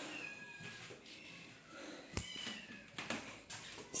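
Young kittens mewing faintly, a few short, thin, high-pitched mews that fall in pitch, with a couple of sharp clicks about two and three seconds in.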